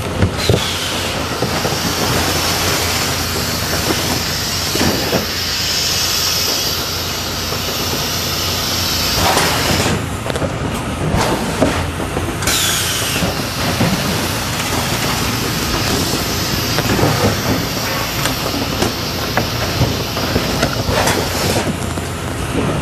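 Cartoning and case-packing line running, with a Combi case erector and sealer and conveyors making a steady mechanical rattle and air hiss, and scattered knocks from cartons and cases. The high hiss cuts out for a couple of seconds about ten seconds in, then returns.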